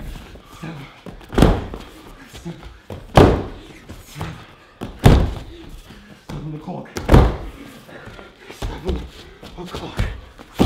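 Four heavy thuds about two seconds apart, with fainter knocks between them: a barefoot performer striking the padded floor mats of the stage.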